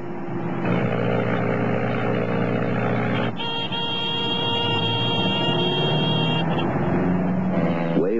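Single-engine light aircraft heard from the cockpit with the power chopped back, a steady hum. About three seconds in, a steady high-pitched tone starts and holds for about three seconds.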